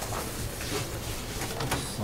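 Meeting-room background: a steady low hum with scattered faint rustles and taps from papers being handled and a laptop keyboard in use.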